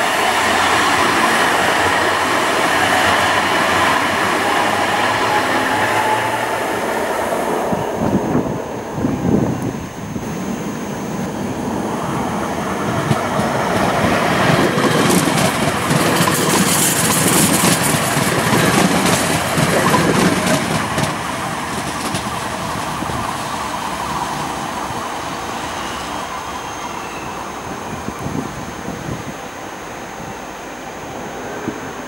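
Citadis Dualis electric tram-train running past close by on ballasted track: loud rolling noise with a faint falling whine in the first seconds, a dip in level about eight seconds in, then loud again with clicking wheels between about 14 and 20 seconds before slowly fading away.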